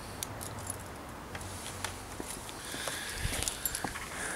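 Outdoor background hum with scattered small clicks and taps, which grow busier near the end as a hand handles the camera close to its microphone.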